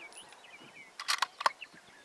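A quick series of sharp metallic clicks about a second in, typical of a bolt-action rifle's bolt being worked between shots to eject the spent case and chamber the next round. Faint chirps sound over quiet outdoor background.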